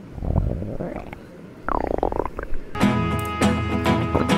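Stomach growling, a low gurgling rumble and then a pitched growl that dips and rises in pitch, the sign of hunger. Guitar music starts near the end.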